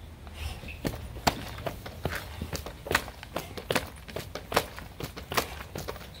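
Heavy battle ropes slapping on grass, with feet stepping quickly in place: a run of irregular sharp slaps and thuds, about two or three a second, some much louder than others.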